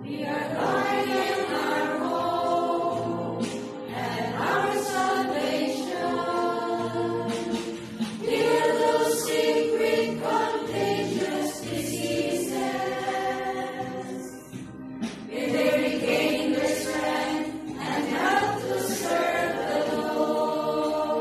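A choir of religious sisters singing a slow hymn to the Virgin Mary in long, held phrases.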